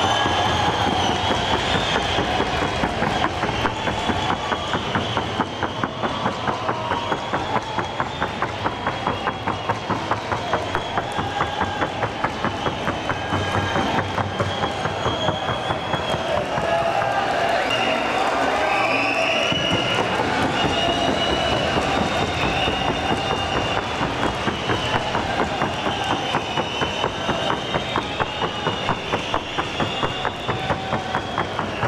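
Hoofbeats of a Colombian trote y galope horse trotting on a wooden sounding board: a fast, even, clattering rhythm that runs on without a break.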